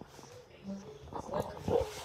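Indistinct, low mumbled speech, quieter at first and picking up in the second half, with some brief knocks and rustles as the phone is moved.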